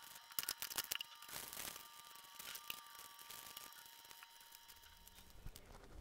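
Faint crackling and clicking of plastic wrappers being packed into a plastic bottle with a stick, densest in the first couple of seconds. A thin steady tone sounds faintly underneath and fades out near the end.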